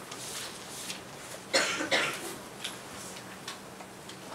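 A man coughing twice into a close microphone, two short coughs about half a second apart, over a faint steady hum.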